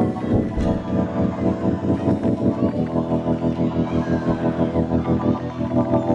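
Organ and drum kit playing up-tempo gospel praise music: sustained organ chords over a quick, steady beat.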